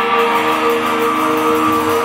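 Live rock band playing, electric guitars to the fore with held, ringing chords.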